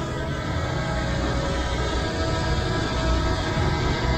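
DJI Mini 2 hovering close by, its four propellers giving a steady whine of several held tones over a low rumble.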